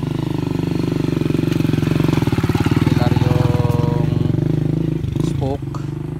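A steady engine drone running close by, swelling in the middle and easing off near the end, with brief voices over it.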